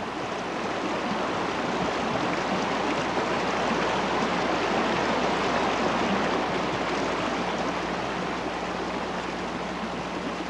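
Fast-flowing floodwater rushing in a steady, even wash that swells a little toward the middle.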